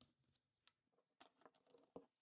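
Near silence, with a few faint clicks and taps from about a second in, as a ball-head camera mount is fitted onto the bolts of a flattened PVC conduit arm.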